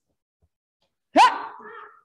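A single sharp kiai shout, a short 'ha!' that rises in pitch, about a second in, given with a karate knife-hand chop.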